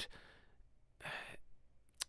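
A person's breath close to a microphone: one short, breathy sigh about a second in, in a pause between words.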